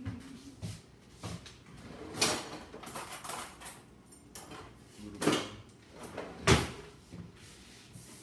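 A few short knocks and clatters of things being handled in a kitchen, the loudest about six and a half seconds in.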